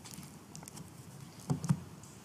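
Papers and a booklet being handled on a wooden lectern, close to its microphone: faint rustling and small clicks, with a couple of louder soft bumps about a second and a half in.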